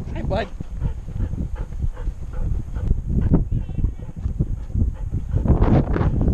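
Irregular low thumps and rubbing from a camera strapped to a dog's chest as the dog moves about. A person's voice calls the dog once at the start, and voices return near the end.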